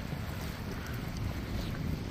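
Wind buffeting the microphone with an uneven low rumble, over the steady rush of a shallow, rocky mountain stream.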